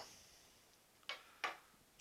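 A kitchen knife set down on a wooden cutting board: two light clicks about a third of a second apart.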